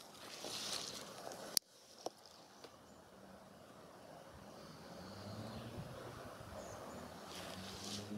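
Faint outdoor woodland ambience: a steady rush of noise, with a low droning hum that swells in the second half. A single sharp click comes about a second and a half in.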